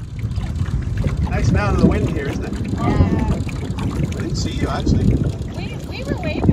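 Wind rumbling on the microphone, starting abruptly, with distant voices talking now and then.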